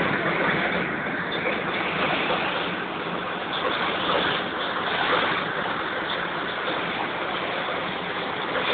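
Stream water rushing steadily over rocks.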